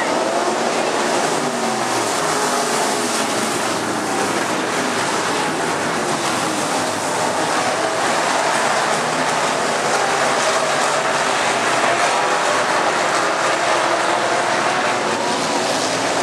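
A pack of dirt-track race cars running laps, several engines at once with their pitches rising and falling as the drivers get on and off the throttle through the turns.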